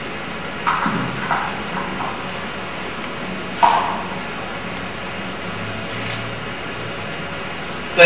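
Steady hiss of room tone, broken by a few short, sharp sounds about a second in and again near four seconds.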